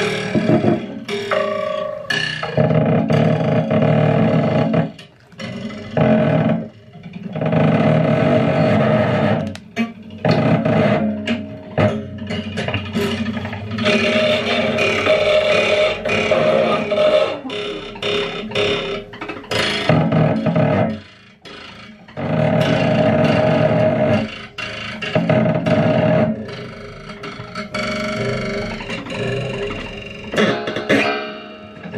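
Amplified objects scraped, bowed and plucked through electronic effects in a dense, noisy improvisation, with a held tone coming and going. Loud stretches are broken by several drops lasting about a second.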